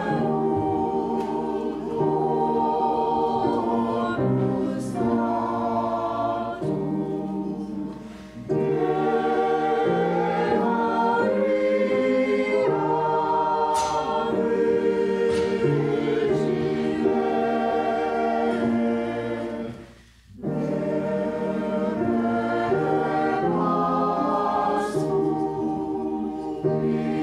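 Church choir of men and women singing together, several voices at once, in long held phrases. There are two short breaks between phrases, about eight seconds in and about twenty seconds in.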